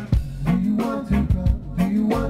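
Live band music: a drum kit keeps a steady beat under sustained bass notes and other instruments.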